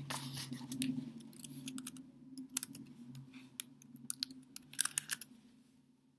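Scattered small clicks and rustles of handling over a faint steady low hum, with the clicks thickest in the second half.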